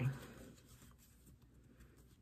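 Faint rustling of a deck of tarot cards being handled in the hands. Mostly very quiet.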